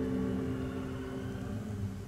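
A ukulele chord ringing out and slowly fading between sung lines, over a faint steady hiss.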